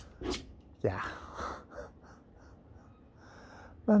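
A man's quiet, breathy 'yeah', then soft breathing in a pause between spoken phrases; speech resumes at the very end.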